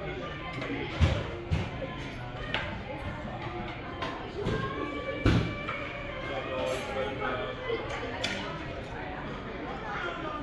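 Busy buffet dining room: many diners talking at once with background music, broken by several short clinks and knocks of dishes and utensils, the loudest about a second in and just after five seconds.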